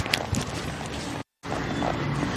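A few hoof thuds on soft arena dirt as a horse is pulled into a one-rein stop, over steady background noise. The sound drops out completely for a moment just past the middle.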